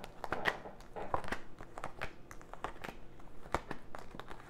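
Tarot cards being handled and shuffled in the hands: a run of light, irregular clicks and rustles of card against card.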